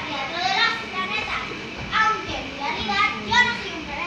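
Many children's voices chattering and calling out over one another in an audience, high-pitched and overlapping, with no single voice clear.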